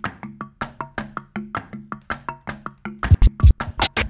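A rhythm track of fast, even hi-hat-like ticks over a low held tone. About three seconds in, vinyl drum scratching comes in over it: kick-drum and snare samples scratched back and forth on a turntable, with heavy low thumps.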